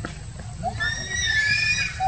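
A macaque's high-pitched, wavering scream, starting a little before halfway and lasting just over a second, over a low background rumble.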